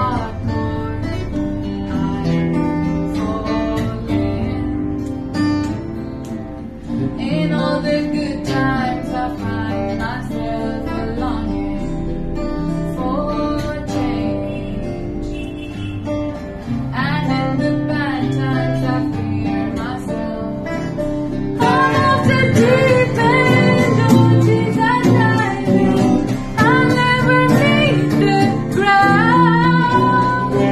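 A woman singing over a strummed acoustic guitar, a live unplugged duo. The singing grows louder about two-thirds of the way through.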